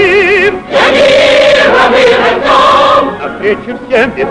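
Film song: a male solo voice ends a phrase with a wide vibrato, then about a second in a choir comes in and holds a long chord for about two seconds before the music thins out near the end.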